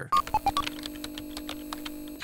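Retro computer-terminal sound effect: three short electronic beeps falling in pitch, then a steady low hum with quick keyboard-like clicks as on-screen text is typed out.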